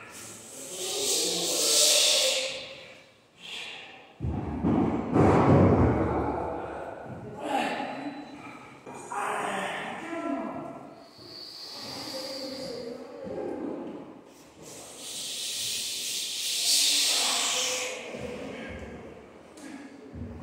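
A man's heavy, hissing breaths and strained grunts of effort through a set of barbell curls, with a loud burst of effort about four seconds in.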